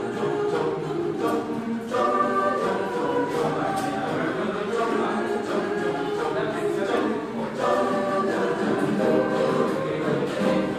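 Mixed choir of men's and women's voices singing together in phrases, with brief breaths between phrases about two seconds in and again past the middle.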